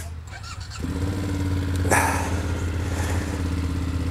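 2024 BMW F800 GS's 895 cc parallel-twin engine starting and settling into a steady idle. It catches about a second in, with a brief louder burst about two seconds in.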